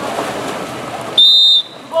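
Referee's whistle, one short, steady, shrill blast a little over a second in, over the noise of splashing in the pool.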